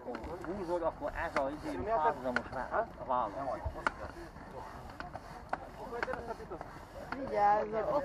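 People talking, too indistinct to make out, with occasional sharp clicks.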